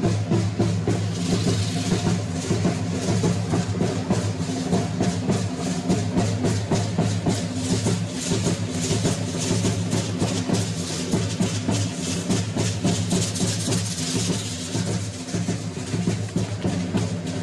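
Matachines dance music: steady low drum-led percussion under a dense, fast clatter of the dancers' rattles and the clicks of their wooden bows and arrows, continuing without a break.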